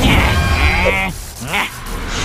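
A cartoon character's strained, wavering vocal cry lasting about a second, followed by a shorter vocal sound about a second and a half in, over background music.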